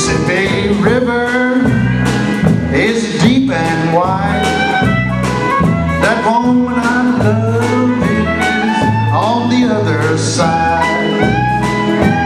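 Live country band playing a blues-tinged number: fiddle bowing sliding melodic lines over electric guitar, drum kit and bass.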